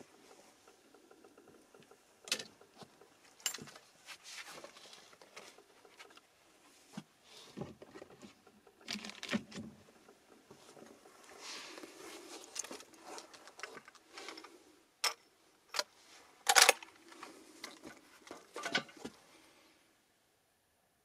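Handling noise from a lever-action rifle and shooting gear being readied: soft rustling with scattered clicks and knocks, the sharpest click about three-quarters of the way through.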